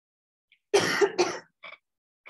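A person coughing twice in quick succession, loud against a near-silent room, about a second in, followed by a brief fainter sound.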